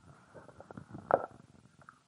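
Faint rustling and scattered small knocks over a faint steady hum, with one louder knock about a second in.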